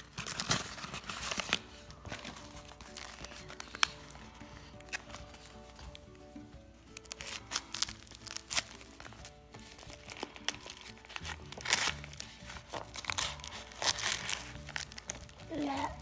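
A paper-and-plastic mailing envelope crinkling and crackling as it is handled, torn at and slit open with a folding knife, in a scatter of sharp crackles.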